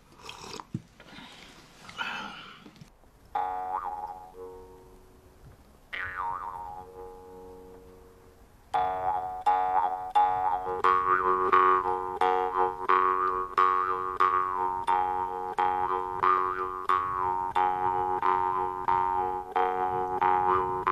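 Jaw harp played: two single plucks ring out and fade a few seconds in, then from about nine seconds in steady rhythmic plucking over a drone, a melody of bright overtones shifting above it.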